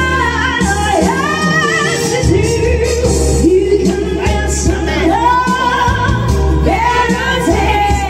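A woman singing into a microphone over backing music, karaoke style, holding long notes that waver in pitch over a steady bass line.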